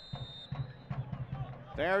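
Referee's whistle blowing the kick-off of a soccer match: one steady, high-pitched blast that cuts off about half a second in.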